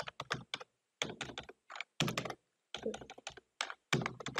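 Typing on a computer keyboard: irregular bursts of key clicks with short pauses between them.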